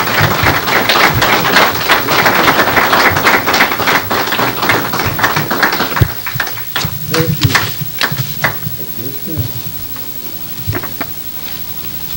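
Audience clapping, dense for about six seconds, then thinning out to a few scattered claps, with voices among them.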